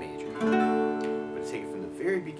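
Acoustic guitar strummed once about half a second in, the chord left ringing and slowly fading.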